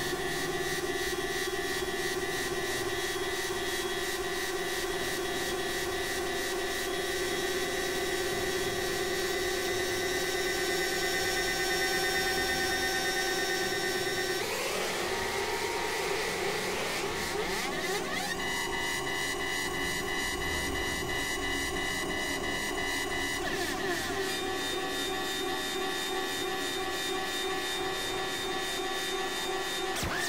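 Experimental synthesizer drone music: several steady held tones stacked together over a fine, regular pulsing texture. About halfway through the tones smear into a sweeping, shifting passage before settling onto a new set of steady tones, with another brief sweep a little later.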